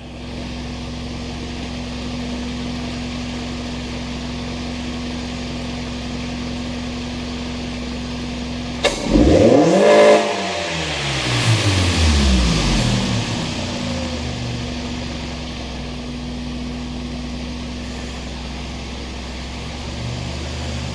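2000 Toyota Previa's 2.4-litre four-cylinder engine idling steadily, then snapped to full throttle once about nine seconds in, the revs rising sharply and dropping back to idle over the next few seconds. It is a wide-open-throttle test of a freshly cleaned mass airflow sensor.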